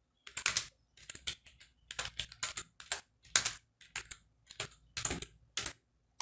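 Typing on a computer keyboard: a run of separate, unevenly spaced keystrokes, a few a second.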